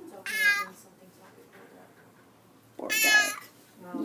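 Domestic cat giving two loud, high meows, the first about a quarter second in and the second near three seconds in, each under a second long.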